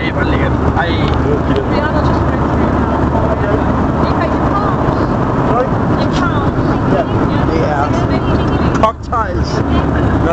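Steady roar of an airliner cabin in flight: engine and airflow noise, with a brief drop in loudness near the end.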